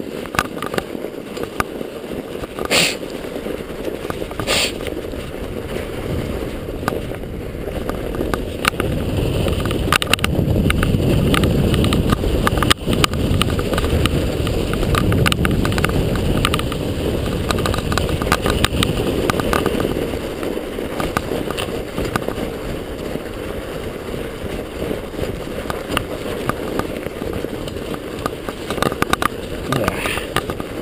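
Mountain bike ridden over fresh, loosely packed snow on a rooty, rocky trail: a continuous rumble of tyres and bike rattle, louder for several seconds in the middle. A few sharp knocks come from the bike hitting bumps, about three and five seconds in and again near the middle.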